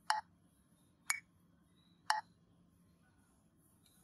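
Metronome ticking in triple time at about one tick a second. The accented first beat, about a second in, sounds brighter than the weak beats on either side of it. The ticks stop after the third one.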